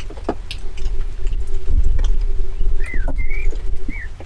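Wind buffeting the microphone outdoors, a low rumble that swells in the middle, under a faint steady hum, with a couple of short high chirps near the end.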